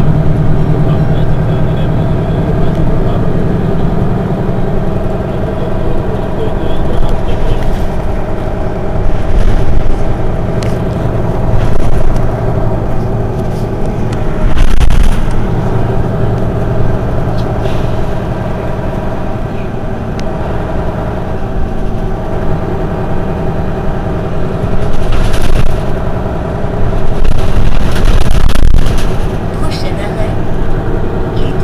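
Mercedes-Benz Citaro city bus engine idling steadily while the bus stands at a stop, with a few brief louder swells of noise along the way.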